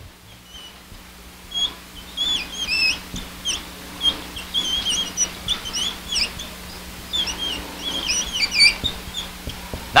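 Dry-erase marker squeaking on a whiteboard as handwriting is written: runs of short, high squeaks that begin about a second and a half in and stop shortly before the end.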